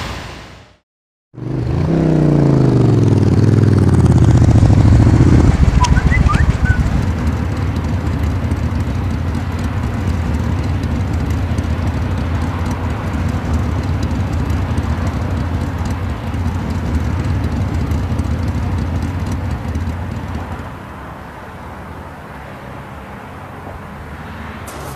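A motorcycle engine running, changing in pitch over the first few seconds and then idling steadily. It stops about twenty seconds in, leaving a quieter steady street background.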